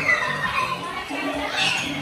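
A group of young children's voices, excited chatter and calls in a busy room, with one high-pitched child's cry sliding down in pitch at the start; music plays underneath.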